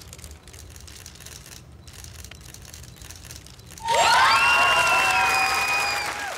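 Audience applause, fairly quiet, for the first few seconds. About four seconds in, loud music enters: a held chord of several notes that slide up into place, and it lasts to the end.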